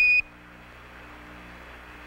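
Quindar tone on the Apollo air-to-ground radio link: a single short, high beep of about a quarter second at the very start, the automatic tone that marks the end of a transmission from Houston. After it, a steady faint radio hiss with a low hum.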